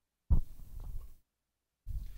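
A single low thump on a handheld microphone as it is moved, followed by a faint rustle for about a second. The sound drops out to dead silence before and after.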